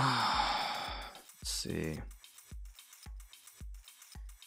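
A man's long, loud sigh at the very start, about a second of breathy exhaling, followed by a short voiced groan. Electronic background music with a steady beat of about two thumps a second runs under it.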